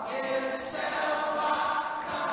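Free-dance program music in a choral passage: a choir singing held notes, with little bass.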